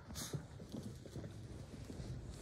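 A quick run of soft thumps and scuffles: small dogs' paws on carpet as they scramble about excitedly.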